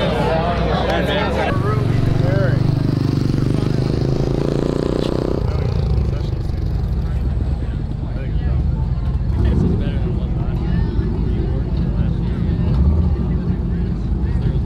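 Drag race car's engine running at idle, loud and steady, its note dropping slightly about five seconds in.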